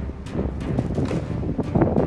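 Wind buffeting the microphone, a low rumble that swells louder near the end.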